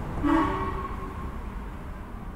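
A horn sounds once, a steady tone lasting under a second, over a low steady background rumble.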